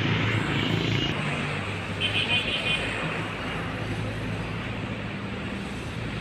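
A steady low motor hum over a wash of outdoor noise, with a brief high-pitched sound about two seconds in.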